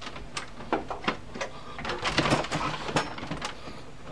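Plastic front panel of a Gateway DX4860 desktop tower being pushed back onto its metal chassis: a run of irregular clicks and knocks as its tabs go into the case, busiest in the second half.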